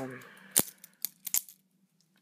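Sharp metallic clicks and taps from handling a balisong trainer's steel handles, about five in all, the loudest a little over half a second in and the rest over the following second.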